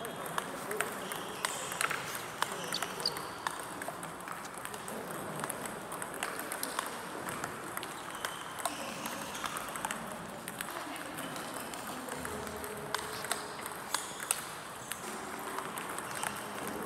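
Table tennis rally: the ball clicking sharply off the bats and the table again and again at an uneven pace.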